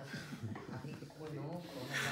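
Quiet, indistinct speech: voices talking softly in a small room, no words clear enough to make out.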